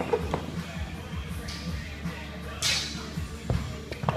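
Iron weight plates being stripped off a barbell: metal scraping as plates slide off the sleeve, with sharp knocks and clanks, over steady background music.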